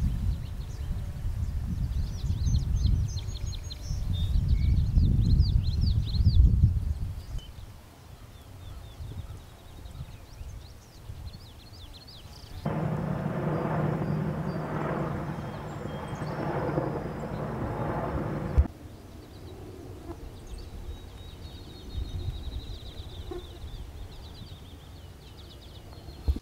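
Wind buffeting the microphone with birds chirping over an open meadow. About halfway through, a helicopter flying overhead is heard as a steady drone with a hum for about six seconds; it starts and stops abruptly. Quieter open-air sound with faint high chirps follows.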